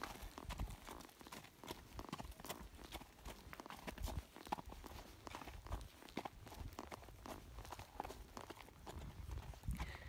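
Hoofbeats of a Danish Warmblood horse walking on hard ground: a steady clip-clop of several hoof strikes a second.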